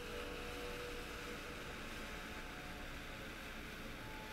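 Faint, steady hiss of room tone, with a faint held tone in the first second or so.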